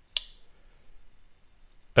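A single sharp click right at the start as a custom folding knife on a bearing pivot is flipped open, its blade snapping past the detent and locking, followed by faint handling noise.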